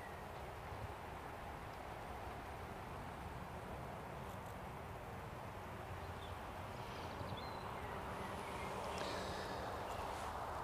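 Faint, steady hum of honeybees flying in and out of a hive entrance during a spring pollen flow.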